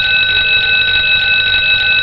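A loud, steady, rapidly trilling bell ringing, which signals that the donation goal has been reached.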